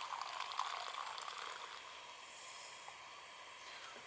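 Hot liquid poured from a stainless steel thermos flask into a cup, a faint trickle that tails off about halfway through.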